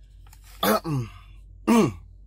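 A man clearing his throat twice, about half a second in and again near the end, each a short sound falling in pitch.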